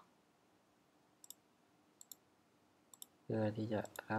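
Four sharp, faint computer input clicks about a second apart, each a quick double tick, as the cursor is placed and the code is edited. Near the end a man's voice starts speaking.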